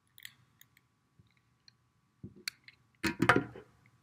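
Faint clicks and light knocks from handling a long candle lighter while lighting a candle. About three seconds in comes a louder, short burst of rustling and clatter close to the microphone.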